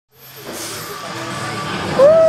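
Roller coaster loading-station ambience fading in from silence, with music and riders' chatter, growing louder.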